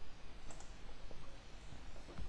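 A couple of faint computer mouse clicks about half a second in, over low background hiss.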